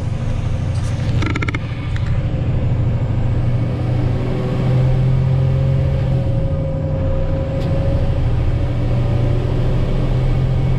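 Diesel engine of a Western Star tri-axle dump truck running under way, heard from inside the cab as a steady low drone whose pitch rises slowly about halfway through as the truck pulls. A short rattle of clicks comes about a second in.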